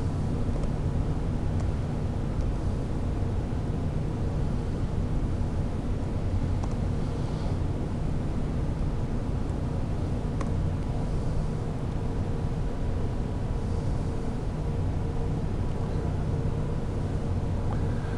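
Steady low hum and hiss of room background noise, with a few faint clicks of laptop keys being typed.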